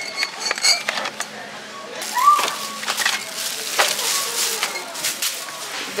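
Glass bottles clinking and knocking as they are handled and pulled from a shelf, a series of short sharp clinks, with some voices in the background.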